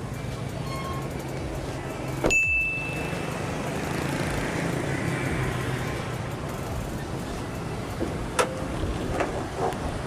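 Bonnet of a Toyota Vios being opened: a sharp clack about two seconds in with a brief high ring after it, then a lighter click near the end as the hood latch is released and the hood raised.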